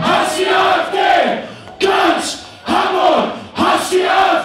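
Large concert crowd chanting in unison, a loud shout roughly once a second, each rising and falling in pitch.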